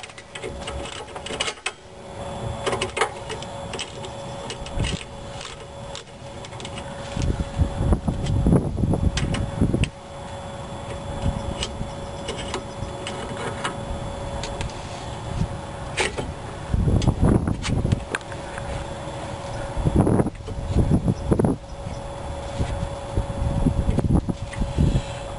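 A ratcheting wrench clicking on a rear brake caliper bolt, with scattered metal clicks and knocks as the bolt is worked loose and turned out by hand. Low rumbling swells and fades several times, most strongly near the middle.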